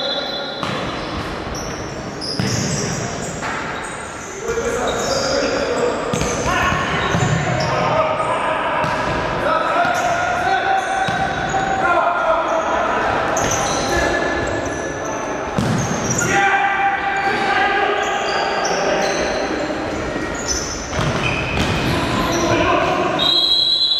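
Indoor futsal game: the ball being kicked and bouncing, players' shoes squeaking on the court floor, and players shouting, all echoing in a large sports hall.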